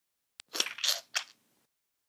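Foley sound effects: a single click, then three short noisy scrapes in quick succession within about a second.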